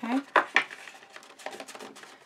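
Thin yellow card stock rustling and crackling as the sides of a folded paper gift bag are pinched in and its top flap is handled, with a few sharp crackles about half a second in and softer rustling after.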